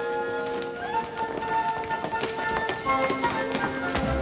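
High school show choir singing held chords, with shoes clicking and tapping on the stage floor as the singers move into a new formation, the taps getting busier in the second half.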